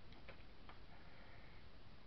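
Faint, irregular clicks and taps of small craft items being handled on a desk, with a brief soft rustle near the middle, over a steady low hiss.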